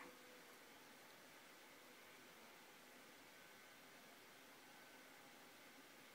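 Near silence: a faint steady hiss of room tone.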